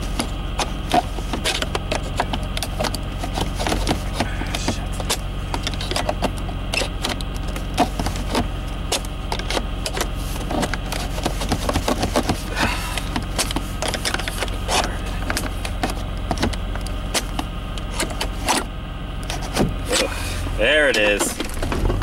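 Metal clicking and scraping as a screwdriver is worked down into the gate of a Mercedes E320's automatic gear selector to free the stuck shift lever, over the steady low hum of the idling engine.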